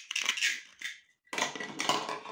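Hard plastic toy pizza slices handled and knocked together: a short clatter in the first second, then a louder burst of clatter in the second half.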